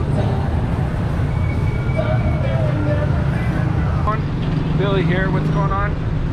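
Busy street traffic with motor scooters and motorbikes running past, a steady low rumble, and people talking nearby, more clearly in the last two seconds.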